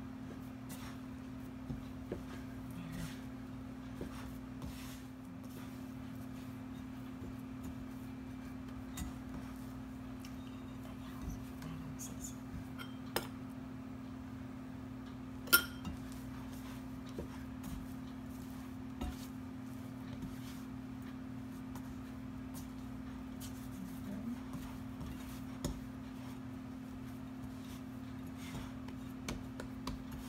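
Bread dough being kneaded by hand in a glass mixing bowl: scattered light clicks and knocks of hand and ring against the glass, with one sharper knock about halfway through. A steady low hum runs underneath.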